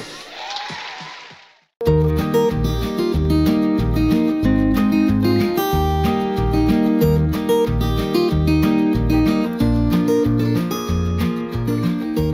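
A short fading noise at the start, a brief silence, then background music from about two seconds in: strummed acoustic guitar over a steady, even bass beat.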